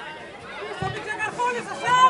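Several people talking and calling out over one another at a football pitch, with a brief low thud a little under a second in; one voice gets louder near the end.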